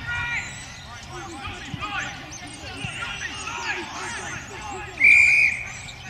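Rugby players and touchline spectators shouting over a ruck, then a single short, shrill blast of the referee's whistle about five seconds in, stopping play.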